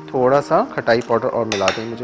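A spoon stirring a thick spice paste in a small bowl, with two sharp clinks of the spoon against the bowl about one and a half seconds in, under a man's talk.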